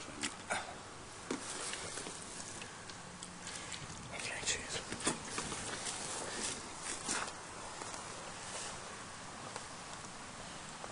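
Rustling handling noise with several short sharp knocks and clicks, the loudest just after the start and around five seconds in.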